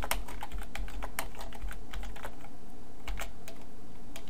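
Typing on a computer keyboard: a quick run of keystrokes that thins out to scattered taps after about a second and a half.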